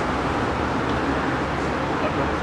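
Steady street traffic noise, an even rumble of passing road traffic with no distinct events.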